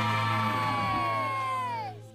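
The end of a cartoon show's theme music: a pitched sound holds its note, then slides steeply down in pitch near the end, over a steady low bass note.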